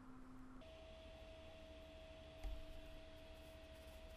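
Near silence: room tone with a faint steady hum, and one soft bump a little past halfway.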